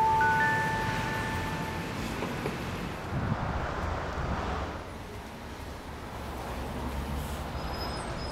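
A single bright chime-like note struck once, ringing and fading over about two seconds, then steady city street traffic noise.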